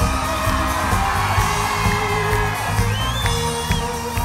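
Live pop band music with a heavy low beat, recorded from the audience, with crowd whoops and high gliding whistles in the second half.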